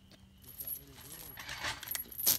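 Faint, light metallic clicks and clinks of a pistol being handled, a little stronger near the end.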